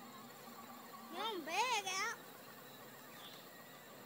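A child's high, wavering wordless cry, rising and falling in pitch, lasting about a second and starting about a second in.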